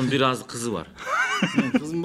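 Men talking and laughing; about a second in, a man's high-pitched, wavering laugh rises above the talk.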